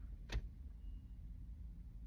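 Faint low rumble of a car cabin's background noise, with a single short click about a third of a second in.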